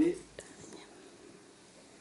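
A man's voice finishing a word, then a quiet pause of faint room tone with one soft click shortly after.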